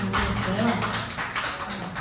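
Sparse hand-clapping from a small audience, several claps a second, easing off toward the end.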